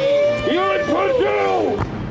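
Several men's voices yelling, with one long held cry and shorter shouts over it that die down near the end.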